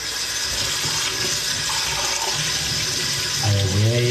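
Kitchen faucet running steadily into the sink, the water stream falling over hands and a sponge as dishes are washed.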